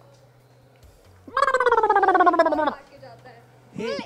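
A person's voice making one drawn-out, wordless vocal sound, starting about a second in and falling steadily in pitch for about a second and a half, with a rough, buzzing texture.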